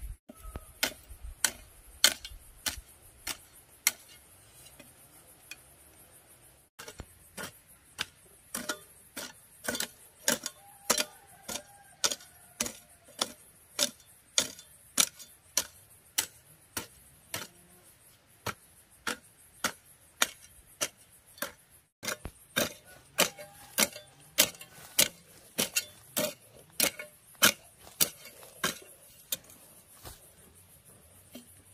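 A long-handled hoe chopping into dry soil, striking about twice a second in a steady working rhythm, with a few short pauses.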